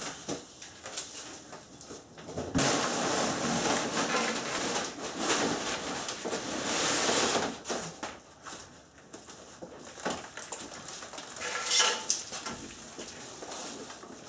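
A large wall panel of 5 mm plywood on pine framing being tipped up and turned over by hand. About two and a half seconds in, a long scraping and rubbing of wood against the floor runs for some five seconds, followed by scattered knocks and creaks as it is handled.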